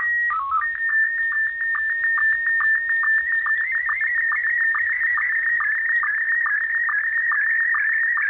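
Slow-scan television (SSTV) picture signal received on shortwave in USB. It opens with a steady high leader tone and a quick run of lower stepped tones (the mode header), then settles into a wavering high tone broken by short, evenly spaced low sync blips, several a second, as the image is sent line by line.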